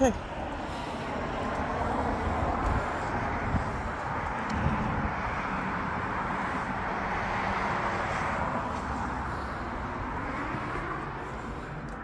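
Road traffic passing on a nearby road: a steady rush of tyre and engine noise that swells and eases over several seconds.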